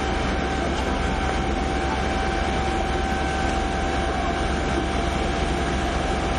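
A large engine or machine running steadily, with a constant low rumble and a thin steady whine above it.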